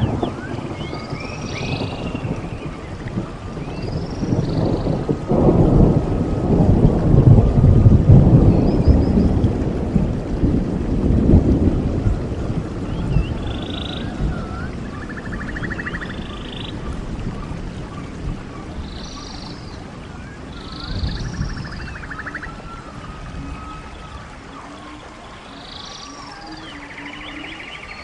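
Rolling thunder over a steady hiss of rain: a long low rumble builds about five seconds in, peaks, and fades slowly over several seconds. Short high chirping calls recur throughout.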